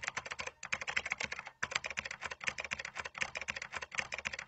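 Computer keyboard typing: rapid, dense keystroke clicks, several a second, with brief pauses about half a second and a second and a half in.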